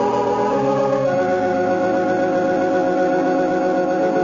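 Organ music of slow, sustained chords, the chord changing about a second in.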